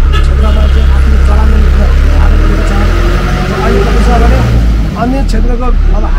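Low rumble of a motor vehicle engine close by, starting suddenly and loudest for about five seconds, with the engine note rising in the middle, heard under a man's speech.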